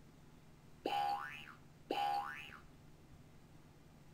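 Two short computer sound effects about a second apart, each a brief held tone that turns into a rising glide. They sound as Dragon NaturallySpeaking carries out a spoken voice macro and pastes its paragraph into the document.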